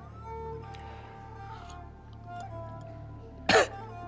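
Soft background score of held notes, broken about three and a half seconds in by one short, loud cough or throat-clear from a person.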